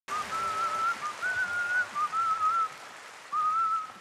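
A man whistling a tune in a string of short wavering phrases, with brief breaks between them, over a steady hiss.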